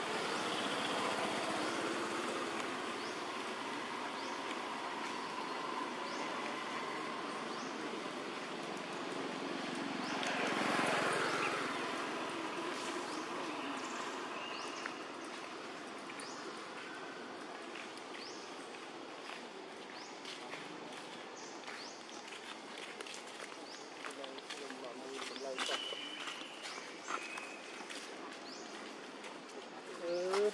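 Outdoor forest ambience with faint, unclear voices, short high bird chirps repeating throughout, and a run of crackles and clicks in the second half, such as a paper carton being handled and crinkled.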